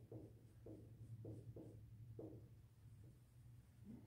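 Faint dry-erase marker strokes on a whiteboard as shading is hatched in: a quick run of soft rubs, about two or three a second, that stops a little over two seconds in. A low steady hum runs underneath.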